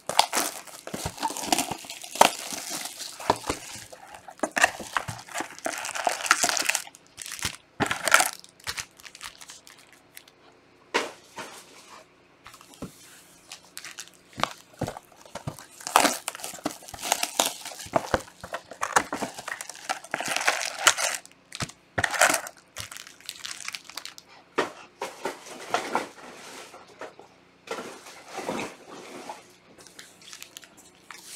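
Plastic wrap on a sealed trading-card box crinkling and tearing as gloved hands strip it off. It comes in irregular bursts with short pauses, and there are a few light clicks from the box and its foil packs being handled.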